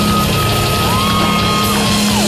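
Heavy metal band playing live: distorted guitar, bass and drums at full volume, with long held high notes that slide up into pitch and back down.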